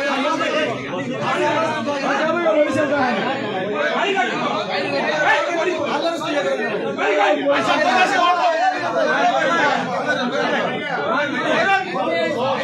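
Several people talking at once in continuous, overlapping chatter, with no pause.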